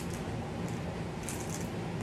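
Sealed plastic Tic Tac pack being unwrapped by hand, giving a few brief, faint crinkles, the clearest a little past the middle.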